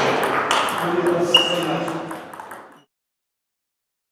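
Table tennis ball clicking off bats and tables in a rally, a quick series of sharp ticks with voices in the background. The sound fades out a little under three seconds in, then goes silent.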